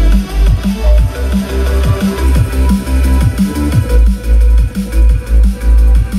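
Electronic dance music played loud through a JBL party speaker at 70% volume with bass boost set to deep. A heavy bass line pulses in a steady rhythm, with short falling bass sweeps.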